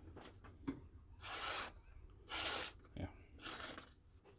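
Hawkbill blade of a Kansept KTC3 folding knife slicing through a sheet of paper in a sharpness test. There are three strokes about a second apart, each a short hiss of cut paper.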